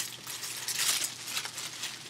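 Irregular rustling and crinkling as a potato growing bag is handled, a little louder just under a second in.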